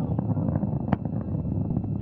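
Antares rocket's first-stage engines at full thrust during ascent: a steady low rumble with scattered crackles.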